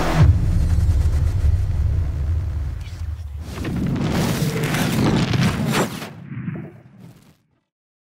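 Dramatic soundtrack music cuts off on a low boom, followed by deep rumbling and swishing transition effects that fade out to silence about seven seconds in.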